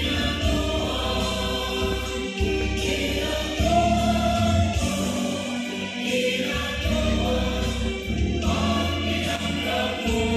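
Music: a choir singing.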